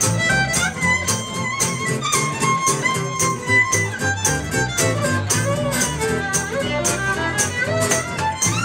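Live acoustic band music: a fiddle carries the melody over plucked upright bass and strummed acoustic guitar, with a tambourine keeping a steady beat of about two to three hits a second.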